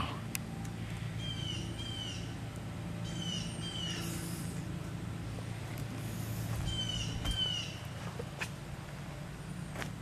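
A bird calling in pairs of short, down-slurred whistled notes, repeated every couple of seconds, over a steady low hum, with a few faint clicks.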